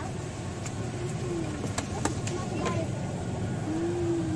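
Busy indoor hall ambience: a steady low rumble with background voices, and a few light clicks in the middle.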